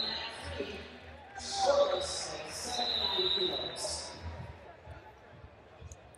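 Faint voices of coaches and spectators calling out, echoing in a large hall during a wrestling bout, with a thin high tone held for about a second midway.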